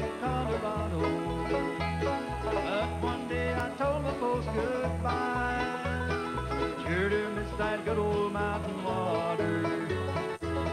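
Bluegrass band playing an instrumental passage: rolling banjo and guitar picking, with some sliding notes over bass notes on an even beat.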